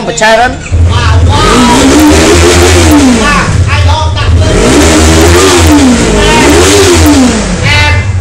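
Motorcycle engine being revved up and down about four times over a steady low rumble, the pitch rising and falling with each blip. It starts about a second in and stops just before the end.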